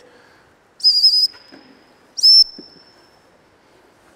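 Dog-training whistle blown twice, two high-pitched single-note blasts about a second and a half apart, the first a little longer and slightly wavering, each ringing on briefly in the building: the stop whistle, the signal for the dog to sit.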